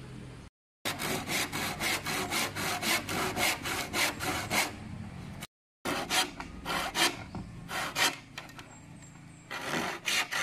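Hand saw cutting through a green bamboo pole in quick, rhythmic back-and-forth strokes. The strokes break off twice into a brief silence and ease off near the end, then start again.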